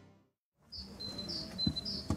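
Near silence for about the first half-second, then outdoor ambience with a bird chirping in short high calls about twice a second.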